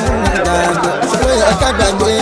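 Music with a steady low beat and a wavering melodic or vocal line.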